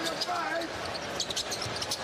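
A basketball being dribbled on a hardwood arena court, with a run of sharp bounces in the second half, over the steady noise of a large arena crowd.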